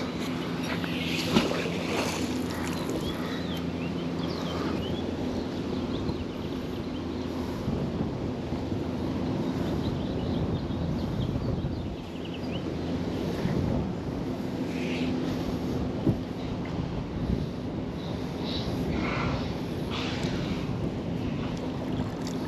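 Outdoor wind noise on the microphone, with a steady low hum underneath and a few faint high chirps.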